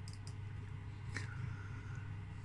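Quiet room tone with a steady low hum and one faint click about a second in.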